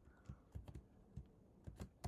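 Faint typing on a computer keyboard: about half a dozen separate keystrokes at an uneven pace.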